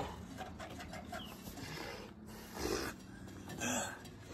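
Quiet breathing and short grunts of effort from a man straining, with two stronger breaths near the end.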